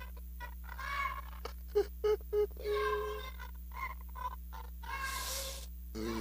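An amplified voice over a church PA making short, broken vocal sounds, with several sharp bursts about two seconds in and a hiss near the end. A steady low electrical hum runs under it.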